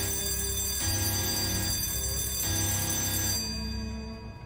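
Anime episode soundtrack: sustained high ringing tones over a low hum that pulses about every 0.8 seconds, with no dialogue.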